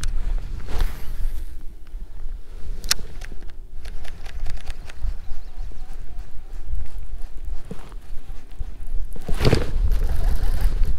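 Wind rumbling on the microphone, with handling noises from a fishing rod and baitcasting reel: a sharp click about three seconds in and a louder rustle near the end.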